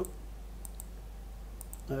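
Light clicking at a computer: two pairs of quick clicks, about a second in and again near the end.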